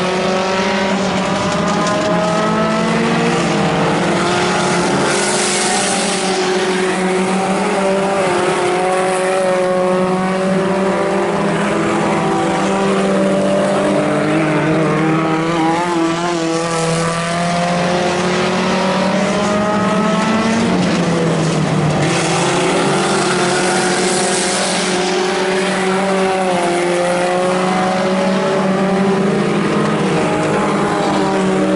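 Four-cylinder Pony Stock race car engines running at steady, moderate revs, several engine notes overlapping and slowly rising and falling in pitch.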